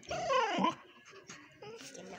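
A dog gives one short whining call that falls steeply in pitch, followed by a few faint clicks.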